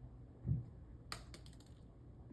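A soft dull thump, then a quick run of light, sharp clicks and taps about a second in.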